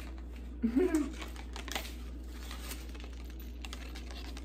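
Light, scattered clicks and rustling from keychains on cardboard backing cards being handled, with a short laugh about a second in. A steady low hum runs underneath.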